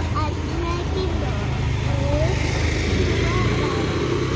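A steady low engine rumble, with faint voices over it.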